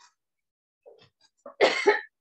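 A woman coughs once near the end, a single short, loud cough after a near-quiet pause.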